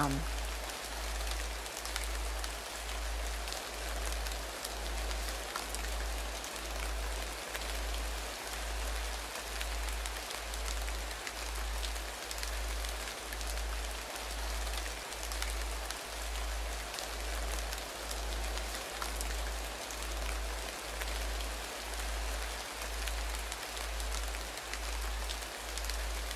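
Background soundscape of a guided meditation: a steady rain-like hiss over a low hum that pulses about once a second, the binaural tone laid under the recording.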